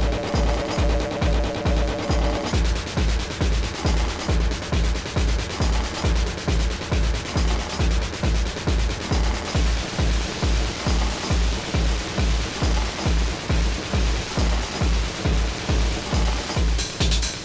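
Techno DJ mix playing from a cassette tape recording: a steady four-on-the-floor kick drum at about two and a half beats a second. A held synth pattern over the beat gives way, about two and a half seconds in, to a hissing noise wash.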